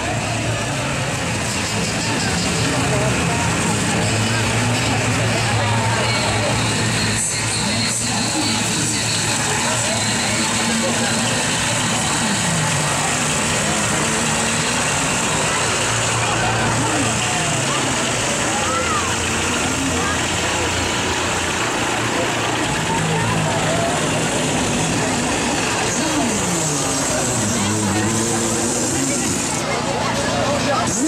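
Tractor engine running steadily at low speed, under a constant babble of crowd voices and calls.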